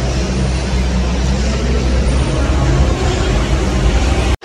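A Ferrari engine idling, a steady low rumble.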